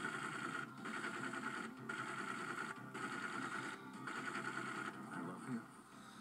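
Film trailer soundtrack played from a VHS tape through a TV speaker: a steady rapid clatter with music beneath it, breaking off briefly about once a second, with a brief swell then a dip near the end.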